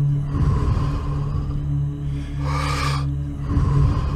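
A person breathing deeply and audibly through the mouth in a paced Wim Hof breathing round, with one strong breath about two and a half seconds in. Steady droning background music plays under it.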